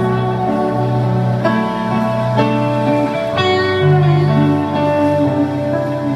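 Live rock band playing a slow, guitar-led passage: guitar chords ringing over held bass notes, the chords changing every second or so.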